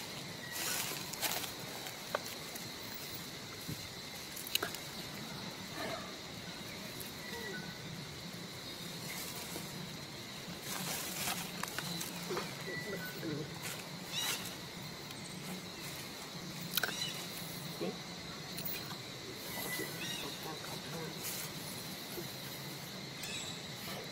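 Outdoor ambience: a steady high insect drone under a faint murmur of distant voices, with scattered soft clicks and rustles.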